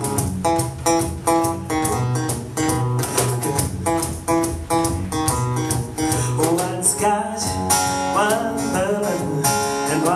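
Live acoustic blues: an acoustic guitar strumming a steady rhythm over a cajon beat, with a voice coming in with wordless singing over the second half.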